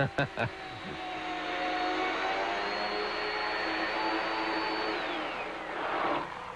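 Chainsaw running at a steady high speed as it cuts through a wall block, its pitch falling away as it winds down near the end.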